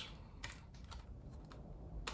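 Faint clicks of a plastic Blu-ray case being handled, a couple of light taps.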